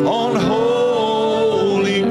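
A church worship team of mixed men's and women's voices singing a gospel chorus into microphones, with a long held note over sustained keyboard chords.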